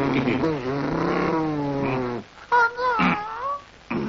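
Wordless cartoon-character vocalising: a long, low drawn-out voice sliding in pitch, then after a brief break a higher, wavering, cat-like whine that stops just before the end.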